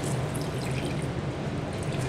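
Distilled water squirted from a plastic wash bottle into a glass beaker: a steady, even trickle over a low steady hum.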